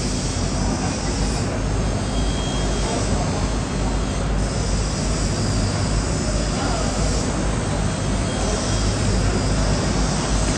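Steady loud mechanical roar with a low hum underneath; a higher hiss comes and goes every few seconds.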